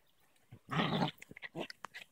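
A dog vocalizing during rough play: one loud, harsh burst just under a second in, then several short quieter sounds.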